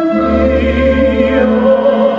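Operatic singing with orchestral accompaniment: a held, steady sung line over a continuous low accompaniment.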